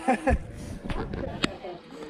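Young men talking and laughing, with a couple of short clicks from the camera being handled.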